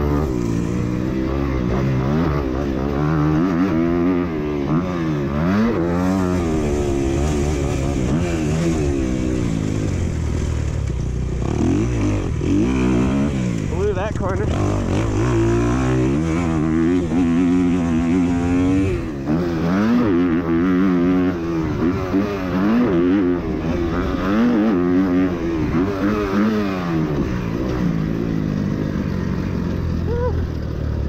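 Kawasaki KX250 four-stroke motocross bike engine at full effort, its pitch climbing and dropping over and over as the throttle is opened and closed and it shifts through the gears on a fast lap. Heard close up from the rider's camera.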